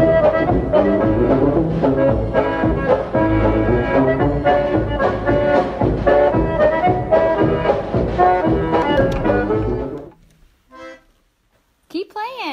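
Accordion music with a regular beat that stops abruptly about ten seconds in.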